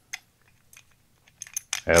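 A few light clicks of a motorcycle carburetor's float bowl being handled and worked off by hand: one sharper click just after the start, then several fainter ones in the second half.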